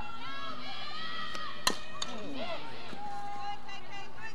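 Softball bat hitting a pitched ball, one sharp crack followed by a smaller click a moment later, amid players and spectators shouting and calling.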